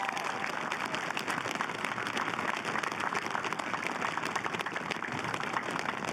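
Audience applause: many hands clapping steadily, outdoors.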